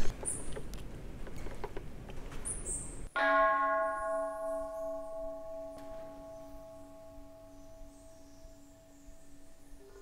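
Hanging metal temple bell struck once with a wooden striker, about three seconds in. It rings on with several tones that fade slowly, the deepest one pulsing with a slow beat.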